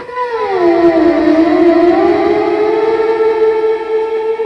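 Theremin-like synthesizer tone from an Axoloti board played by hand distance over infrared distance sensors, run through reverb. The pitch glides down about a second in, then slowly climbs back and holds, with echoes trailing the glide.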